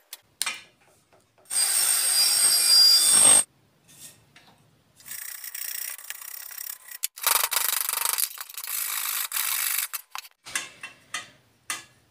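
Three bursts of rasping, rubbing noise, each about two seconds long, as something is worked back and forth by hand against the exhaust pipe and its support bracket, with a few light metal clicks between them.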